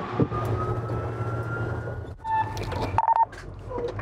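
Emergency vehicle under way: steady engine and road hum with a siren wail slowly rising in pitch, which cuts off suddenly about two seconds in. A few short electronic beeps follow near the end.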